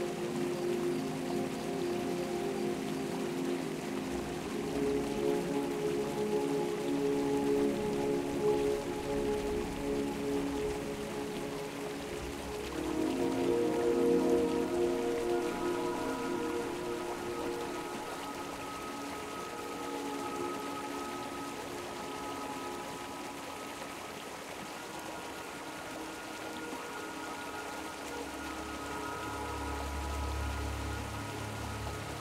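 Soft ambient music of slow, held notes over the steady hiss of a flowing mountain stream. The low notes swell about halfway through and higher held notes come in after it.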